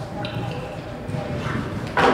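Hoofbeats of a show jumper cantering on soft arena footing in its approach strides to a fence, with voices in the background.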